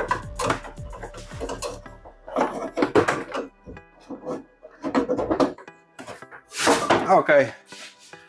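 A cable in a blue plastic sleeve rattling and scraping against the van's sheet-metal body as it is pulled out through a drilled hole, in several short, irregular bursts.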